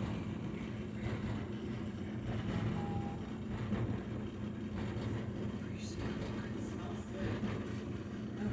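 A steady low mechanical hum, with a short faint tone about three seconds in.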